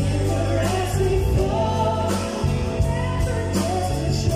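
Live band music with a singer, played through a PA, with a steady drum beat under the sung melody.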